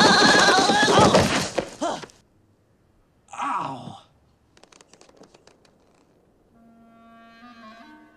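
A man yells loudly for about two seconds as he slides and falls down icy steps, then gives a short falling groan about a second later. A soft held musical note comes in near the end.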